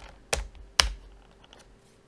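Typing on a computer keyboard: a few keystrokes in the first second, the two loudest about half a second apart.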